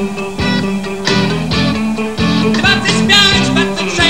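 Rock music: a band's guitar playing over a steady beat.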